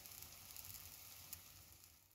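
Faint, steady sizzling of celery-root fritters frying in a pan, with one small crackle a little past the middle.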